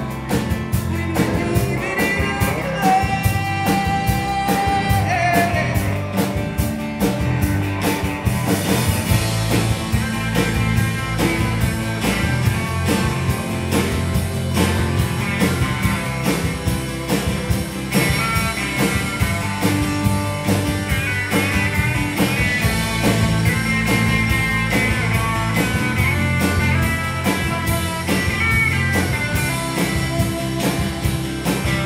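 Live rock band playing an instrumental passage: electric guitar melody lines over strummed acoustic guitar, bass and drums. The cymbals get louder about eight seconds in.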